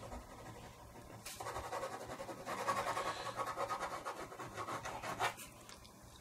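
Black ballpoint pen scratching across paper in rapid back-and-forth hatching strokes, starting about a second in and stopping about five seconds in.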